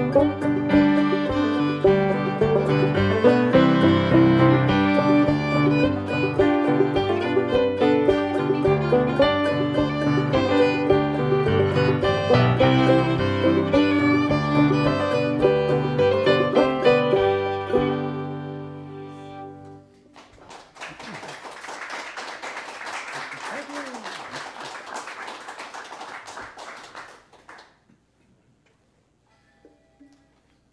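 Fiddle, five-string banjo and keyboard playing the instrumental close of an old-time folk song, ending on a held chord that fades out about twenty seconds in. Audience applause follows for about seven seconds.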